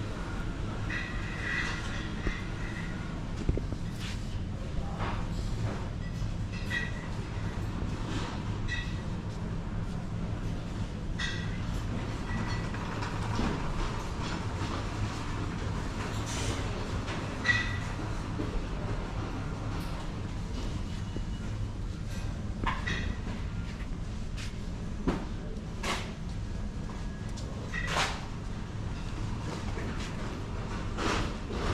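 Supermarket ambience: a steady low hum, with scattered clicks and knocks and a few short high beeps.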